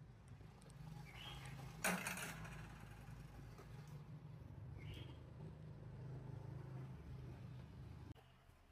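Faint workshop background: a steady low hum, one sharp knock about two seconds in, and two short high chirps.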